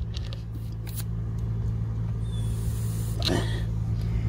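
A steady low hum like an idling engine, with a short faint hiss of air about two seconds in as a manual pencil tire pressure gauge is pressed onto the tire's valve stem.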